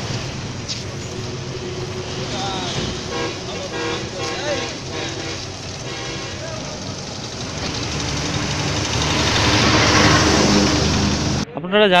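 Street ambience around a walking crowd: scattered faint voices over road traffic noise that grows louder toward the end, then cuts off abruptly.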